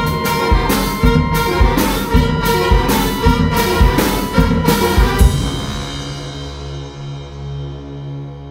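University wind ensemble playing loudly, brass to the fore, with drum strokes about twice a second. About five seconds in, the full band cuts off and a low held tone is left sounding, slowly fading.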